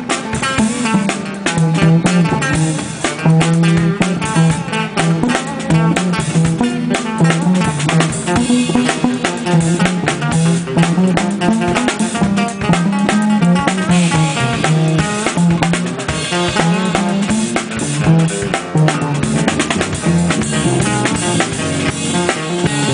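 Live jazz-funk trio playing: guitar over a busy drum kit and a moving bass line.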